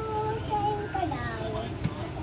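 A person's voice singing or humming long, wavering notes without words, with a sharp click near the end.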